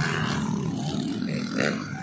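Motocross dirt bike engines running on the track, a continuous rough engine sound.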